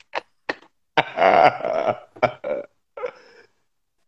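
A man laughing hard without words: two short gasps, then a long, croaky, gurgling laugh about a second in, followed by a few shorter bursts that fade out near the end.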